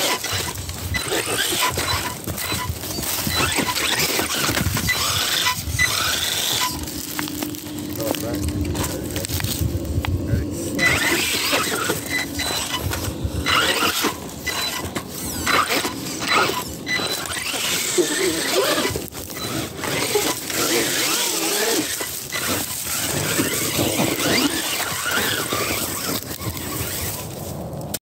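Axial Ryft RBX10 electric RC rock bouncer climbing a rock face: its motor and drivetrain whining under load while the tyres and chassis knock and scrape against the rock in many short clicks and knocks.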